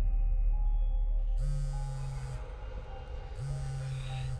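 A mobile phone vibrating on a hard tiled floor: a low, rattling buzz about a second long, repeating every two seconds, heard twice. Before it, a low rumble fades away under a faint eerie drone.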